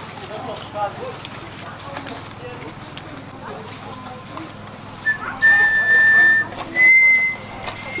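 A person whistling two long, steady notes, the second a little higher, starting about five seconds in, over faint background voices.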